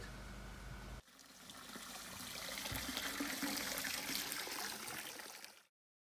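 Water trickling and splashing, starting abruptly about a second in, building up over a couple of seconds and stopping suddenly shortly before the end.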